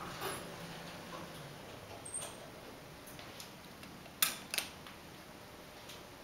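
Thyssenkrupp traction freight elevator cab travelling to a floor: a faint low hum, then two sharp clicks about four seconds in, under half a second apart.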